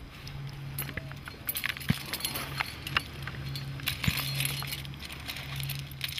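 Metal climbing hardware on a harness, carabiners and quickdraws, clinking and jangling in scattered light clicks as the climber moves on rock. A low hum comes and goes underneath.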